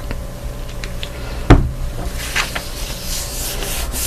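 Hands rubbing and pressing a folded sheet of cotton bond paper flat against a tabletop, spreading the ink and water inside into an inkblot. The rubbing is scratchy, with a few small clicks and one sharp thump about a second and a half in.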